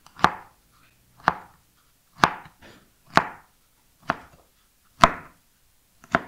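Kitchen knife slicing a firm log of chocolate cookie dough with chopped hazelnuts. Each cut ends in a sharp knock of the blade on a wooden cutting board: six even cuts, about one a second.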